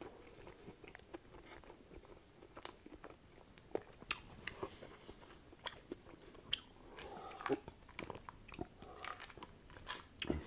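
Close-miked chewing of a mouthful of food, quiet, with scattered sharp mouth clicks throughout.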